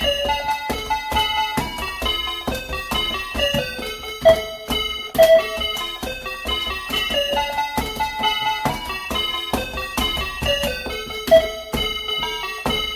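A tune played on the keys of AR-7778 electronic calculators, each key press sounding a short electronic note: a quick melody of stepped tones, each note starting with a light click, with a second part played on another calculator beneath it.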